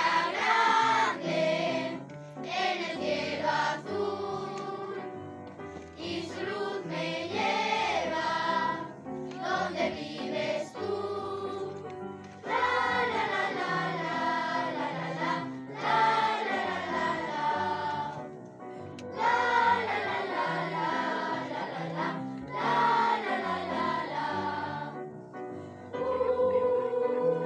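A large choir of children and young people singing, in phrases separated by short breaks.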